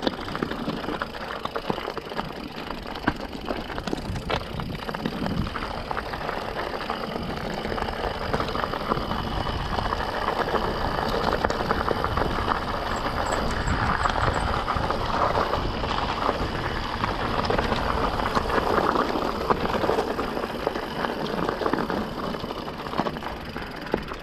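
Mountain bike rolling over a loose gravel and stone track: tyres crunching on stones and the bike rattling, with a steady rush of noise that grows louder through the middle.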